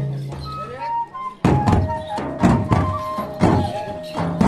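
Ensemble of large frame drums and a wind pipe playing dance music: after a short lull in the drumming, heavy strokes come back about a second and a half in, about twice a second, under a held pipe note.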